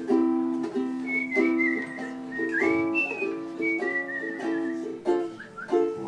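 Ukulele strumming chords in a steady rhythm under a whistled melody, a single thin high line that wavers and slides in pitch from about a second in until well past the middle.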